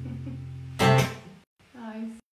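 Acoustic guitar chord ringing out, then one loud final strum a little under a second in that fades and cuts off, closing the song. A short voice sound comes near the end.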